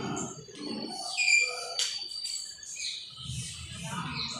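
Small birds chirping, with a thin held whistle about a second in, and a sharp tap of chalk on a blackboard near the middle as letters are written.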